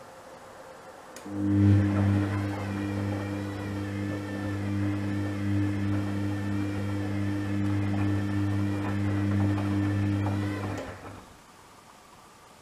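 Gorenje WA72145 front-loading washing machine's motor turning the drum for one wash tumble during a boil-wash cycle. A steady motor hum starts about a second in and stops about a second before the end, with the wet laundry tumbling and sloshing in the drum.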